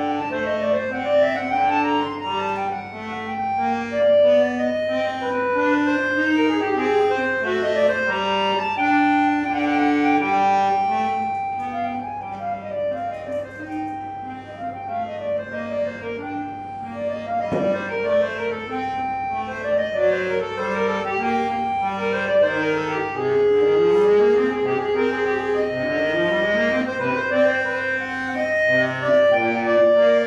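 Solo piece played on a Pigini chromatic button accordion: quick runs of single notes over held chords, with rising runs of notes near the end.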